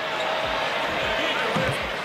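Basketball bounced on a hardwood court during a free-throw routine: a few soft low thumps about half a second apart over the steady hubbub of an arena crowd.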